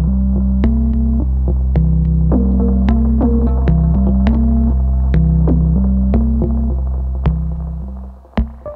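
Eurorack modular synthesizer playing a generative patch. A loud, deep bass drone holds under a sequence of stepping notes that change about twice a second, with sparse sharp clicks about once a second. The drone fades away near the end.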